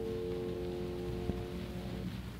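The song's final chord ringing out and slowly dying away, over the steady hiss of an old recording, with one faint click a little past halfway.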